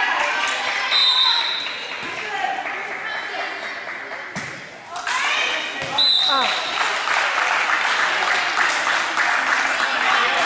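A referee's whistle is blown twice, once about a second in and again about six seconds in, over spectators' voices and shouting in a gym, with the knock of a volleyball being struck.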